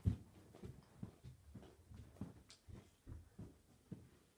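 Faint, irregular low thumps of someone moving about the room, with a louder knock at the very start.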